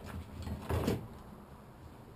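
Brief scraping and rubbing as a braided rope is drawn through the coil spring of a steel Conibear trap, with a faint handling sound near the start and a louder one a little before the middle.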